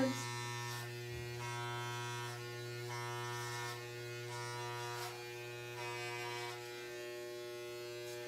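Corded electric hair clipper with a guard, running steadily with a buzzing hum as it cuts the hair at the nape of the neck in a fade. Its level swells and dips a little with each upward stroke.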